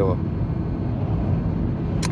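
Steady road and engine noise of a car at highway speed, heard from inside the cabin: an even, low rumble that doesn't change.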